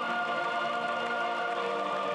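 Choir singing over music, holding long steady notes.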